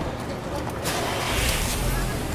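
A motor vehicle's engine and road noise swelling in about a second in, with a deep low rumble underneath.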